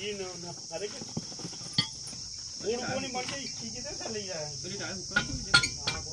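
A steady high-pitched chorus of crickets, over which an inner tube is being pulled by hand out of a worn tractor trolley tyre, with rubber handling noises and a few sharp clinks, the loudest about five and a half seconds in.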